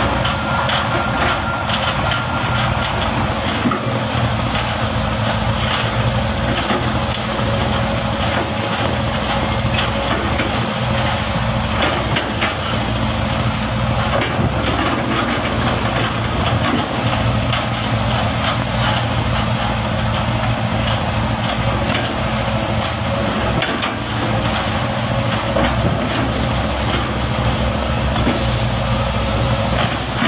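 Hitachi crawler excavator's diesel engine running steadily as the machine pushes its arm against an oil palm trunk.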